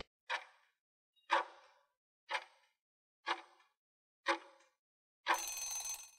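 Countdown timer sound effect ticking five times, about once a second, then a short ring as the count reaches zero.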